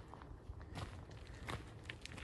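Faint footsteps of a person walking outdoors, a few soft steps spaced under a second apart.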